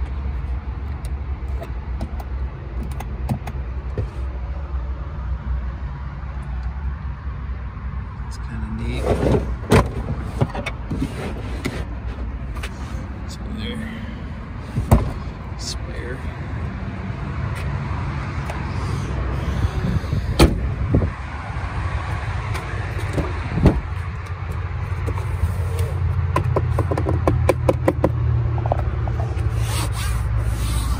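Handling noise from a 2021 Ford Bronco Sport's interior: a hand rubbing and tapping the plastic cargo-area and door trim and shifting the rubber mats. Scattered sharp knocks and clicks sound over a steady low rumble.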